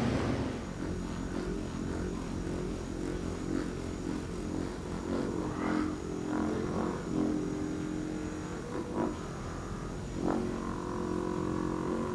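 Handheld percussion massage gun running against a person's back, a continuous motor buzz with rapid hammering strokes, its tone shifting a little as it is pressed and moved over the body.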